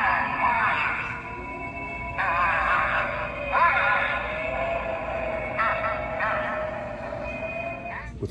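A light-up Halloween gargoyle decoration playing its built-in spooky sound effect through a small speaker: eerie, warbling voice-like sounds and music in several phrases, thin and narrow in pitch range.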